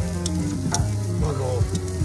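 Chicken wings sizzling on a hot grill grate, with a couple of sharp clicks of metal tongs on the grate as the wings are shuffled over.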